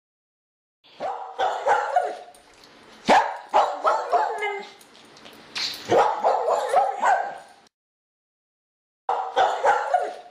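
A dog barking in quick runs of sharp barks. The sound starts abruptly about a second in, cuts off suddenly a little after seven seconds, and starts again near the end.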